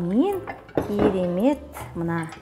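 A woman's voice with swooping, rising and falling pitch, over the clink of kitchen utensils against dishes, with one sharp clink about a second in.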